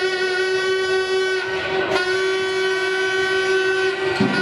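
A loud, steady horn-like tone held at one pitch with a rich stack of overtones, wavering briefly about halfway through.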